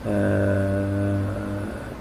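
A man's drawn-out hesitation sound between words, a voiced "uhh" held on one steady pitch for about a second and a half before fading out.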